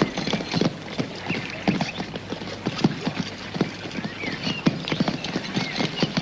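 Hooves of several horses clip-clopping at a walk on a dirt track, the footfalls uneven and overlapping.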